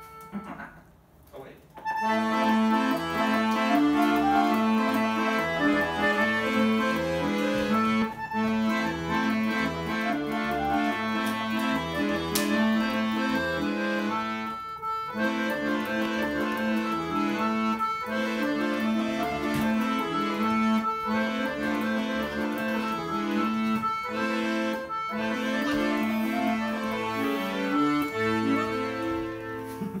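Piano accordion playing a tune, held chords and melody over a moving bass line. It starts about two seconds in after a short pause and breaks off briefly a few times between phrases.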